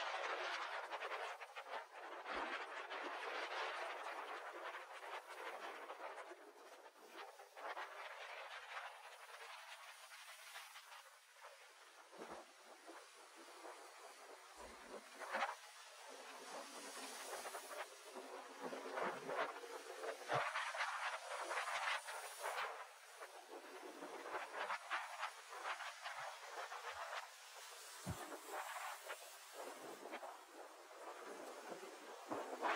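Sea waves washing and breaking against the concrete tetrapods of a breakwater: a steady, surging rush of surf that swells and fades, with a few sharper splashes.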